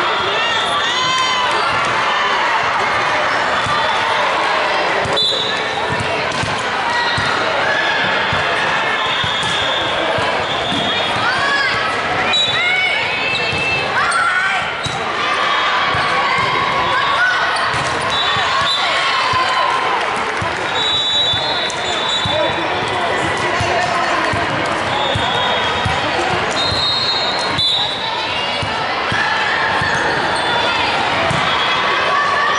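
Echoing indoor volleyball-hall din: a mix of many players' and spectators' voices, with the ball being hit and sneakers squeaking on the hardwood court. Short high whistle-like tones come at intervals.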